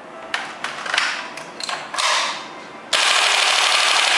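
Magazine change on a WE G39C gas blowback airsoft rifle, a run of clicks and clacks as the gun is handled and reloaded, then about three seconds in a sudden full-auto burst of rapid gas blowback shots that carries on past the end.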